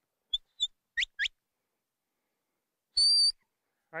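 Stockdog handler's whistle commands to a herding dog: two short high chirps, then two quick rising whistles about a second in, and one held high whistle about three seconds in.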